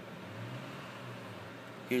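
Low steady hum with faint background hiss; a man starts speaking at the very end.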